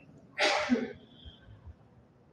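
A short, sharp breath noise from a man close to a headset microphone, lasting about half a second, with a slight catch of voice at its end.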